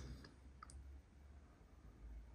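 Near silence: room tone with a faint low rumble and two faint, short clicks in the first second.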